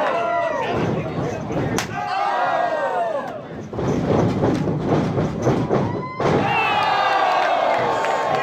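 Wrestling crowd shouting and cheering while two wrestlers trade strikes, with the sharp slap of a blow landing about two seconds in.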